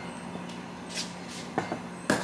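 A few faint clicks and brief soft hisses as a champagne bottle's cork is worked loose by hand, just before it pops.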